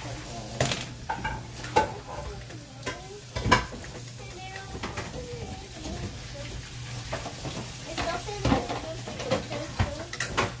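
Irregular sharp clicks and clatter, the loudest about three and a half seconds in, with faint voices in between over a steady low hum.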